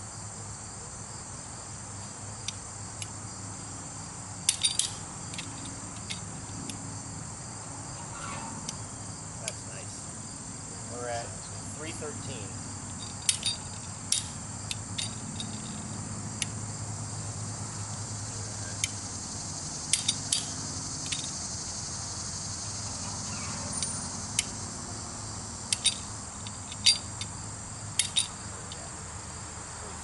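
Sharp metallic clicks every few seconds, singly and in quick pairs, from the ratchet of a hand-crank winch as it is wound to lift a tower. Under them runs a steady high chirring of insects.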